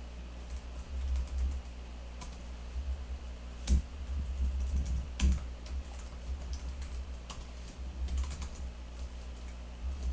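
Typing on a computer keyboard: a run of irregular keystrokes with two louder key presses a little past the middle, over a steady low hum.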